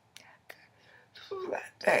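A woman's voice speaking softly, partly in a whisper, after two faint clicks; the voice grows louder near the end.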